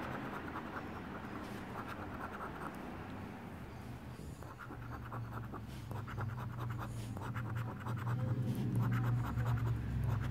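A euro coin scratching the latex coating off a scratch-off lottery ticket on a wooden table, in short bursts of rapid back-and-forth strokes. A low hum grows in the background during the second half.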